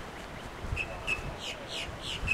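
Wild birds calling: a run of short, high chirps starting under a second in, mixed with quick down-slurred notes.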